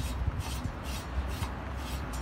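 Repeated rubbing and scraping strokes, two or three a second, as a gloved hand works at the bottom end of a steel core barrel tube.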